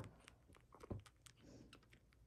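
Faint, irregular wet clicks and smacks of a young kitten suckling milk from a feeding bottle's nipple, with two louder clicks, one at the very start and one about a second in.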